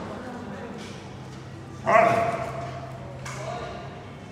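A dog gives one loud, sudden call about two seconds in. The call holds a clear tone that fades away over about a second and a half.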